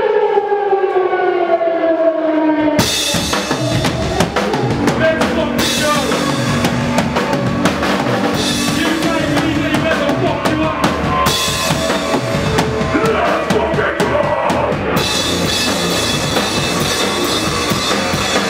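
Hardcore band playing live: a slowly falling pitched tone opens, then about three seconds in the full band comes in loud, with pounding drums and cymbals under heavy guitars, and keeps going.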